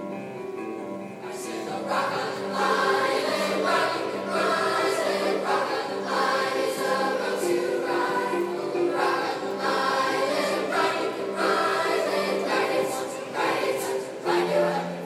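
A mixed choir of seventh-grade boys and girls singing an up-tempo song. It opens on held notes and comes in fuller and louder about two seconds in.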